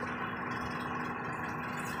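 Steady hum of running machinery in the background, with one constant low tone and an even mechanical noise beneath it.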